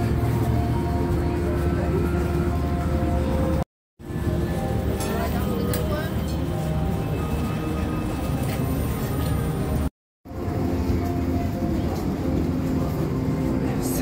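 Steady low hum of an enclosed hall's ambience, holding several sustained tones, with faint distant voices. It drops out to silence twice, briefly, about four and ten seconds in.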